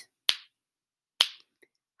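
Two finger snaps about a second apart, marking two beats of rest in a steady pulse.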